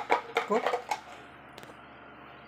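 A toy spoon clicking against a clear jar during a toddler's pretend cooking: a few quick light taps in the first second, then a couple of faint ones near the end.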